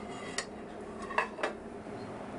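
Metal cookware clinking as stock is poured from a saucepan into a copper pot: three short clanks, one about half a second in and two close together around a second and a half, over a steady low kitchen hum.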